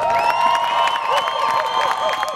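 Audience cheering at a marching band performance, with long shouts and high whistles held over scattered clapping.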